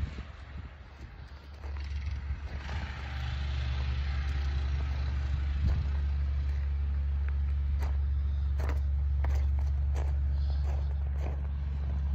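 Engine of a homemade track sled running at a steady speed, out of sight, growing louder over the first few seconds and then holding level, with a few faint clicks near the end.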